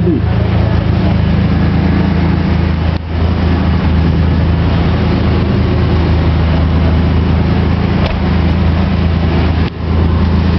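Wall of subwoofers in a competition car-audio van playing very loud, sustained bass. At the camera it sounds like a heavy, distorted rumble. The sound breaks off briefly about three seconds in and again near the end.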